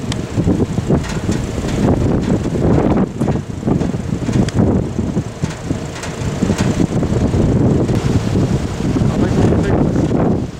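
Gusty wind buffeting the microphone, a loud, rumbling rush that surges and dips unevenly.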